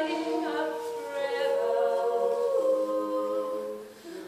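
Women's barbershop quartet singing a cappella in four-part harmony, holding sustained chords that shift twice. The sound drops away near the end, before the next phrase.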